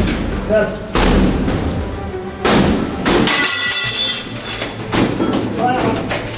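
Two heavy thuds about a second and a half apart, mixed with music and raised voices.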